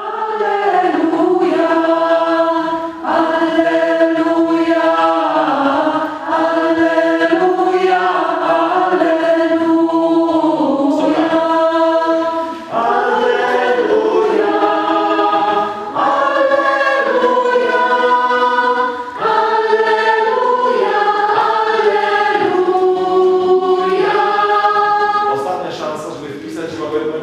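A mixed choir of men's and women's voices singing in parts, holding sustained chords in phrases of about three to six seconds, with brief breaks between them.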